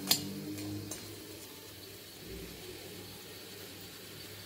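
A perforated steel spoon clinks sharply once against a stainless-steel kadai as it starts stirring, followed by a few faint scrapes and taps over the next second and a half, then only a low, quiet background.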